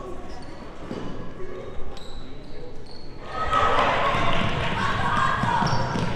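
Basketball bouncing on a hardwood gym floor under spectators' and players' voices in a large, echoing gym. The voices swell louder about three seconds in as play resumes.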